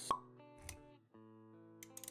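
Animated-intro sound design: a sharp pop right at the start, a brief whoosh after it, then soft sustained synth-like music notes.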